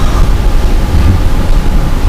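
Steady, loud low rumble with a fainter hiss over it: the background noise of the room and recording, with no speech.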